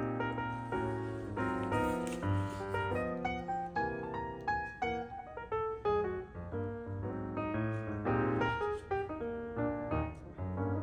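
Background piano music: a quick, continuous run of notes over held bass notes.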